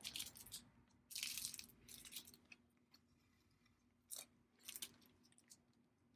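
Faint crinkling and scraping of a fabric-covered cardboard cup sleeve as a needle and thread are pushed and pulled through it and a button, in a few short, separate bursts with a small click near the middle and near silence between.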